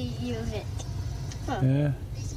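A voice from a country music station on a Toyota truck's dashboard radio, in two short phrases: one at the start and one about a second and a half in. A low steady rumble fills the cab underneath.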